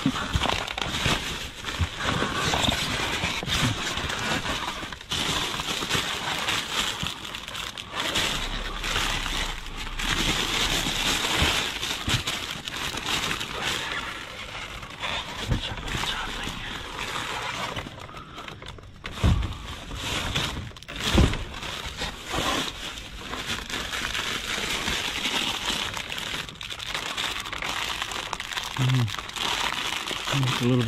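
Plastic produce bags and packaging crinkling and rustling steadily as a gloved hand rummages through bagged vegetables and cardboard boxes, with two dull thumps about two-thirds of the way through.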